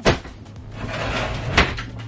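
A cupboard or closet door being handled: a sharp knock at the start, rustling, and a second knock about a second and a half later.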